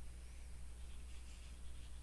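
Faint scratching of a stylus on a drawing tablet in short strokes, over a steady low hum.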